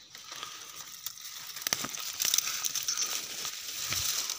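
Dry leaves and twigs rustling and crackling as brush is pushed aside by hand, louder from about two seconds in.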